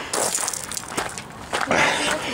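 Footsteps on a gravel path at a brisk walk, a few separate steps with a noisy scuffle near the end.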